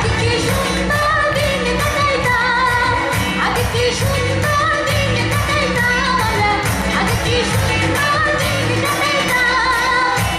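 Live pop band music with a woman singing into a microphone, her voice wavering in pitch over electric guitars, keyboard and a steady beat.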